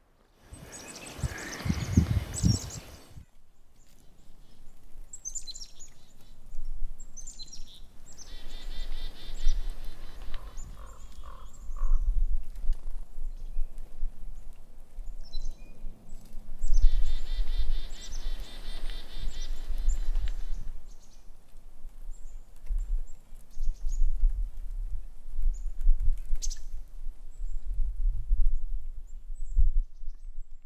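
Small birds chirping and calling in short, scattered phrases, some as rapid runs of high repeated notes, over a steady low rumble of wind. A loud rush of noise fills the first few seconds.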